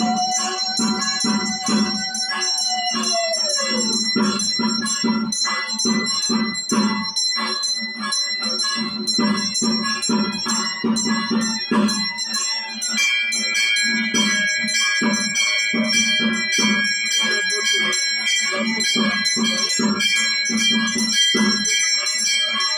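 Puja music: drum beats in a steady rhythm, with bells ringing throughout. A held note falls away about four seconds in, and a fresh high bell tone comes in about halfway through.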